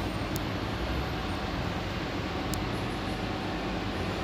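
Steady background noise with a low rumble and hiss, broken by two faint high clicks, one just after the start and one about two and a half seconds in.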